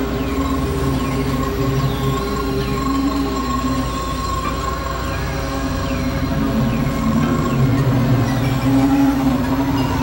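Experimental synthesizer drone: several steady held tones, low and mid, layered with short high glides that curve down and back up about every second, giving a droning industrial texture.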